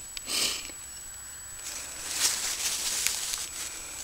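Soft rustling and brushing of large pumpkin leaves and vines being pushed aside by hand close to the microphone. It comes as a short rustle near the start and a longer one in the middle.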